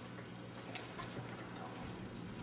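A few faint, irregular clicks of a computer mouse as the video player is opened, over a steady low hum.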